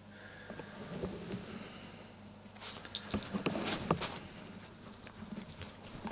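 A small dog sniffing and moving about on a bed, with soft rustling of the bedding. It is faint at first, then a run of rustles and light clicks comes in the middle.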